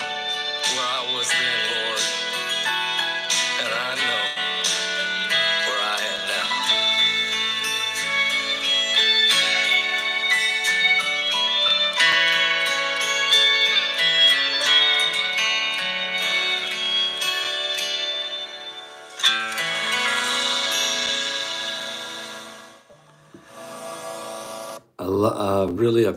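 A song with guitar accompaniment and a man singing, which thins out and fades away about three-quarters of the way through.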